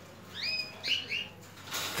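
Caged canaries chirping: a few short, high, sliding calls about half a second in and a quick run of them again around a second in.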